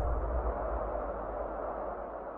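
The low rumbling tail of a logo-intro sound effect, fading away steadily.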